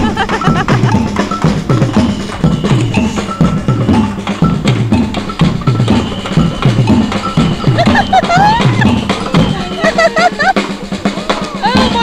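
Samba band drumming: a bass drum keeping a steady repeating beat under snare drums and other percussion. Voices talk and laugh over the drumming in the second half.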